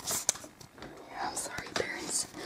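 Soft whispering, with a few light clicks of plastic Littlest Pet Shop figures being handled in the first second.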